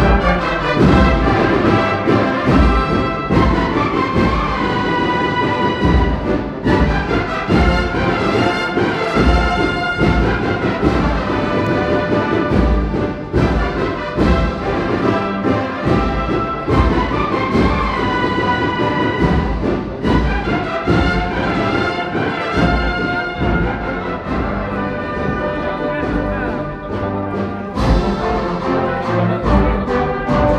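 A Sevillian agrupación musical, a Holy Week brass-and-drum band, playing a processional march live: a brass melody of held notes over steady bass drum beats.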